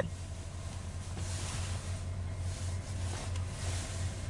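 Steady low hum heard from inside a stopped car's cabin, with a faint rushing noise that swells and fades in the middle.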